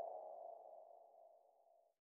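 The fading tail of a channel logo sting: a single ringing tone that dies away and is gone about a second and a half in.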